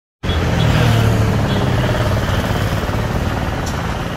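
Motor vehicle engine running close by, a low hum loudest in the first second and a half and then easing off, over steady street noise.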